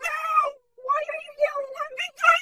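A high-pitched screaming, wailing voice in two long cries: one in the first half-second, then a second that starts a little under a second in and keeps going.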